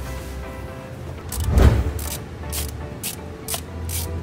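Background music over a dull thump about a second and a half in, then a run of short ratchet clicks about twice a second as a hand tool turns a Torx bolt on the thermostat housing.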